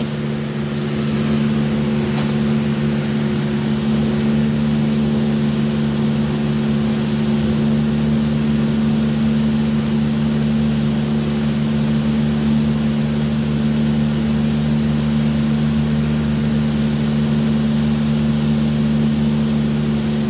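A steady machine hum: a constant low drone with several fixed pitches over an even rushing noise, unchanging throughout.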